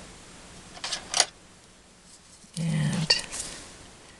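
Fiskars craft scissors picked up and handled against a paper card: a short rustle and a sharp click about a second in, then more handling noise a little past halfway.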